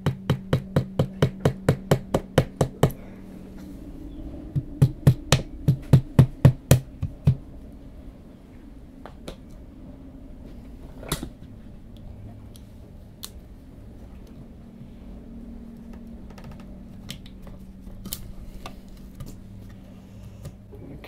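Quick, evenly spaced light taps, several a second, in two runs of a few seconds each, then a few scattered small clicks: a toothpick being tapped into a stripped screw hole in the clock's wooden case to fill it.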